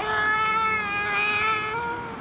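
Recorded baby's wail from the baby Holle Bolle Gijs talking waste bin: one long, steady cry held for nearly two seconds, lifting slightly in pitch just before it stops.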